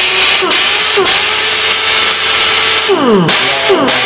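Pneumatic impact wrench running free with a loud hiss of air and a steady whine, freshly lubricated with a few drops of air tool oil after losing power to internal dryness and rust; it runs clearly differently now. Near the end the air cuts off and the whine falls away as the motor spins down.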